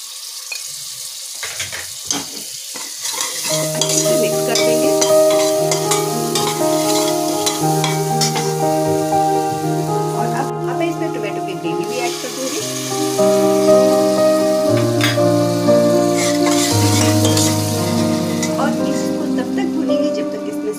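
Onions and a spice paste sizzling as they fry in a steel pressure cooker, with a spoon stirring and clicking against the pot. From about three seconds in, background music with long held chords plays over it and is the loudest sound.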